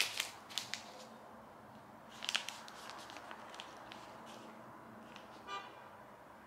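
Faint crinkling and clicking of a plastic soda-cracker wrapper being handled, in scattered light bursts. A brief high-pitched toot sounds near the end.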